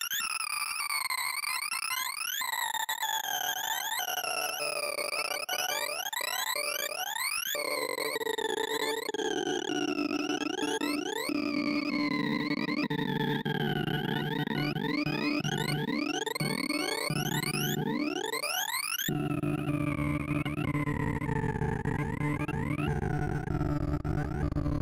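Synthesized sorting-visualizer tones from the ArrayV program, their pitch following the values being read and written as Binary Merge Sort (binary insertion, then merging) sorts a reversed array. They run as quick, repeated rising sweeps and zigzag glides, and a lower, fuller layer of tones joins about three quarters of the way through.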